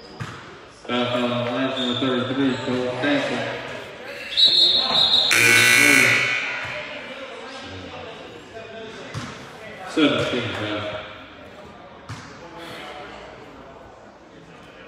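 Gym scoreboard horn sounding a steady buzz for about three seconds, with a second, louder blast near the middle, in a reverberant gym. Later a basketball is bounced on the hardwood floor a few times.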